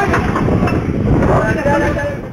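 Several men's voices shouting over a loud, steady low rumble aboard a fishing boat, picked up by the boat's CCTV camera microphone during an onboard fire.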